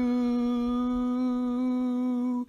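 A voice humming one long, steady note as part of a hummed tune.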